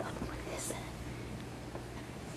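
Faint whispering over a steady low hum, with a short sharp hiss a little under a second in.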